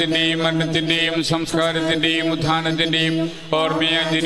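Liturgical chant sung in Malayalam over a steady held drone note, with a brief pause for breath near the end.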